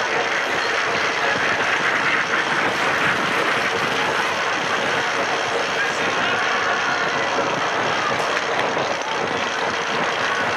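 Steady crowd noise from the stands of a velodrome: many voices blended into a continuous din, with no single voice standing out.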